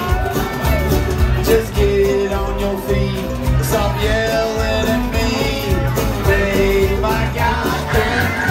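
Live country-bluegrass band playing loudly through a club PA: acoustic guitar, mandolin, banjo, upright bass and drums over a steady beat.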